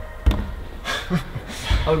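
Two dull thuds about a second and a half apart: a climber's body and climbing shoes knocking against the bouldering wall and its holds as he moves.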